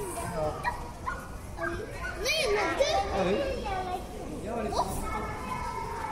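Visitors' voices: children talking and calling out among adult chatter, with one high-pitched child's exclamation about two seconds in.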